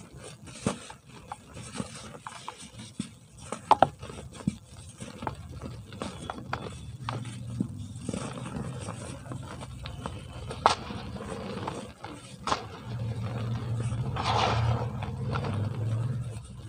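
Soft, dry cement blocks crushed and crumbled by hand, with scattered sharp crunches and snaps and the soft hiss of powder falling into a basin, louder near the end.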